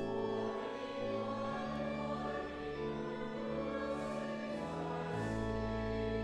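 A church congregation singing a hymn with instrumental accompaniment: held chords move every half second or so over a deep, sustained bass line.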